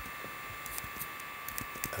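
A few short, faint computer keyboard clicks, from keystrokes pasting text and switching windows, over a steady electrical hum with several thin high steady tones.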